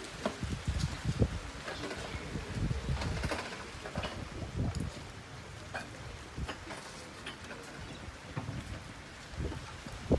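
Rain falling during a thunderstorm, with gusts of wind buffeting the phone's microphone in uneven low surges and scattered sharp ticks of drops.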